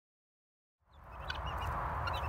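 Silence for nearly the first second, then a flock of 15-week-old domestic helmeted guinea fowl giving short, high chirping calls over a steady rushing outdoor background.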